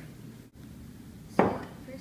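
A dish or utensil knocking once on a table: a single sharp clack about a second and a half in that dies away quickly, over low room noise.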